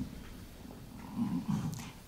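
A pause in a woman's speech: quiet room tone, with a faint, low hesitating hum of her voice a little past the middle.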